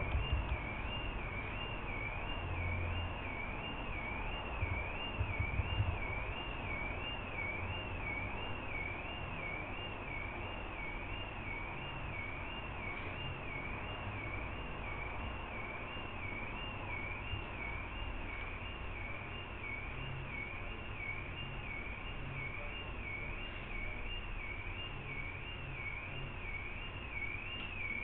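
A faint high warbling tone, rising and falling in pitch about one and a half times a second, over steady background hiss, with a few low bumps in the first six seconds.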